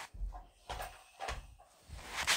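Handling noise on a phone's microphone: about four soft, low knocks and rubs as the phone is moved.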